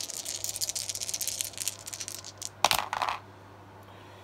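A handful of small plastic six-sided dice rattling in a cupped hand for about two and a half seconds, then thrown and clattering briefly onto the gaming board.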